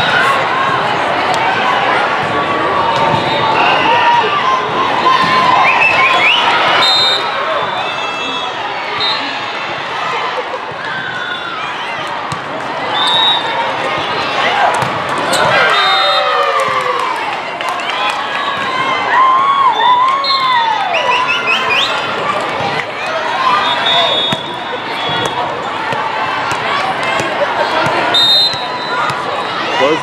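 Volleyball match in a large, echoing hall: players' and spectators' shouts and cheers, volleyball hits and sneaker squeaks on the court, and several short, high referee whistles from the courts.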